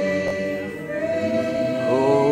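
Church choir singing, holding a long chord that moves to a new chord about a second in.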